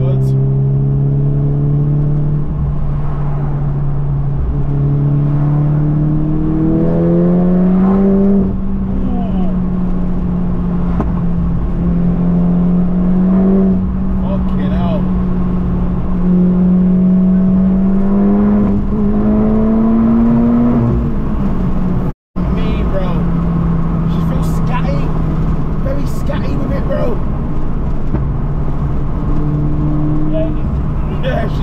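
Cabin drone of a Mk7 Golf GTI's turbocharged four-cylinder engine under way at speed. The pitch climbs as the car accelerates about seven seconds in and again around twenty seconds in. The sound cuts out for an instant about 22 seconds in, then settles at a lower, steady pitch.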